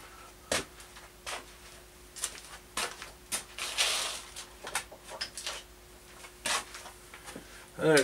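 Scattered light clicks and knocks of metal tools and parts being handled around a stopped metal lathe, with a short hiss about four seconds in, over a faint steady hum.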